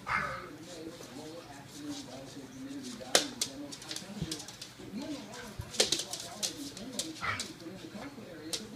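A golden retriever and a small black-and-tan dog play-wrestling, with continuous low, wavering growls and grumbles and a few sharp clicks, the loudest about three and six seconds in.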